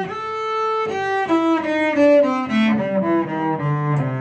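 Cello playing the A minor blues scale downward, one sustained note after another from the top of a two-octave run, stepping down toward the low strings.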